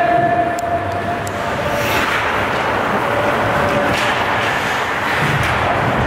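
Ice hockey rink game sound: a steady din of voices and rink noise with a few sharp clicks of sticks and puck, and a long held tone in the first second or so.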